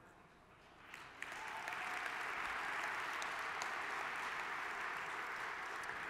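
Audience applauding in a large hall. It begins about a second in after a short hush, swells quickly and then holds steady.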